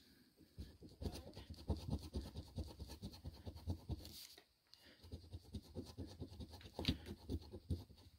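A large coin scratching the coating off a scratch-off lottery ticket: rapid, short rasping strokes in two runs, with a brief pause about halfway through.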